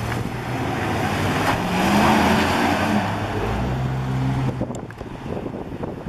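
A pickup truck's engine as it drives past, swelling to its loudest about two seconds in and fading away by about four and a half seconds.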